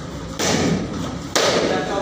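Two taekwondo kicks striking a foam kick paddle, about a second apart, the second louder.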